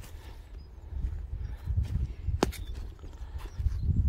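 Footsteps on dry grass under a low rumble of wind and handling noise on a handheld microphone, with a single sharp click about two and a half seconds in.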